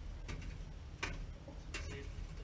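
Small metal ash shovel stirring ashes in a steel mesh ash sifter, clicking sharply against the mesh three times, the loudest click about halfway through.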